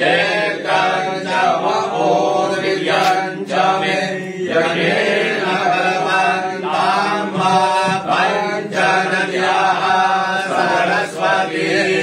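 A male voice chanting a Hindu devotional mantra in melodic phrases over a continuous low drone.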